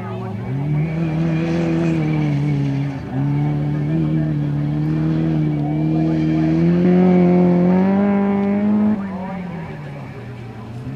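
Off-road racing buggy engine revving hard along a dirt course, its note dipping briefly twice in the first three seconds where the throttle is lifted, then climbing in pitch before falling away sharply about a second before the end.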